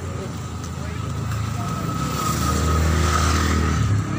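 A motor vehicle passing close on the road, its engine hum and tyre noise growing louder about halfway through and peaking near the end.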